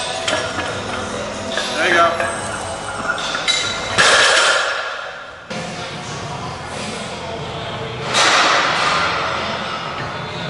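Barbell loaded with bumper plates clinking and knocking during deadlift warm-up pulls, with a few sharp clanks and two louder bursts of noise, about four and eight seconds in, that fade away, over steady gym background noise.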